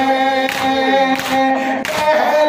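A man singing a noha (Shia mourning lament) into a microphone in long held notes, over the rhythmic matam of mourners striking their chests with their hands, about three beats in the two seconds.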